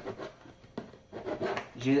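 A blunt knife blade scraping and rubbing as it saws through the thin wall of a plastic jug, with one click a little under a second in.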